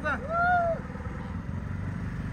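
A boat's motor running steadily with a low, even drone.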